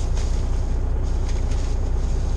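Semi truck's diesel engine idling, a steady low rumble heard from inside the cab.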